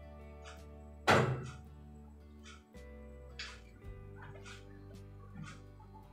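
Background music of sustained notes, with a loud single knock about a second in as the plastic bucket bumps against the stove, and a few lighter knocks and rustles after it.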